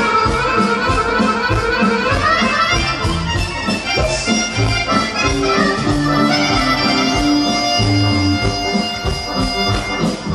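A live folk band playing an upbeat tune, with the accordion most prominent over a violin and a drum kit keeping a steady beat. Quick runs of notes in the first seconds give way to longer held notes.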